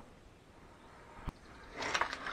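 Quiet room tone with a single short click a little over a second in, then a man's voice starting near the end.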